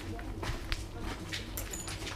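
Footsteps scuffing and crunching over debris on a concrete floor: scattered small clicks over a low steady hum, with a brief high-pitched squeak near the end.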